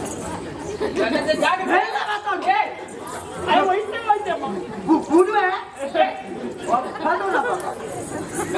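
Speech: several voices talking back and forth.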